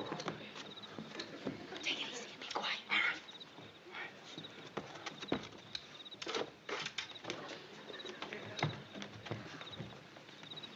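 Crickets chirping in short repeated trills, a night-time effect, over scuffing footsteps, knocks and rustling as two people creep along a shingled roof.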